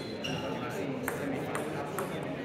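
Table tennis ball bouncing with two sharp clicks, about a second in and again half a second later, over a murmur of voices in an echoing sports hall, with a brief high squeak near the start.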